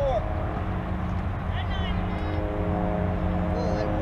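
Outdoor softball-field ambience: scattered distant voices of players and spectators calling out, over a steady low rumble and hum.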